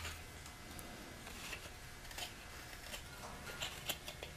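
A carving knife with a modified Mora blade paring shavings from a basswood figure: faint, scattered slicing strokes, a few short cuts spread through the few seconds.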